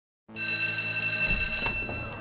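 A school bell ringing, a steady high ring that starts abruptly after a brief silence and fades near the end.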